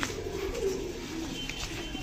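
Domestic pigeons cooing softly.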